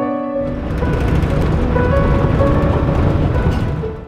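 Background piano music over the steady low rumble of a vehicle driving on a gravel road, heard from inside; the road noise comes in about half a second in.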